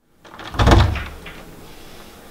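A door thuds heavily about half a second in, with a rattle, followed by two light clicks.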